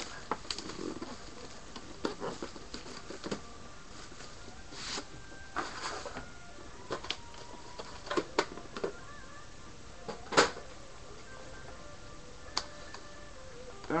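Plastic shrink-wrap crinkling and tearing off a trading-card box, then scattered clicks and rustles as the box is opened and handled.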